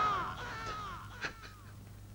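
Film background score: a high, mournful melodic line slides downward and fades away within about a second and a half. A brief breathy gasp comes about a second in.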